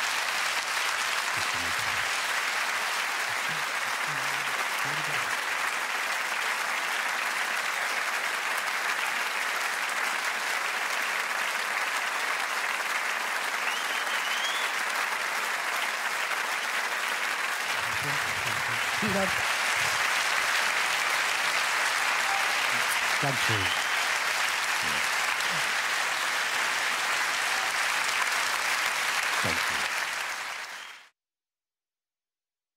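Large audience applauding steadily and at length at the end of a live show, with a few voices calling out within the crowd.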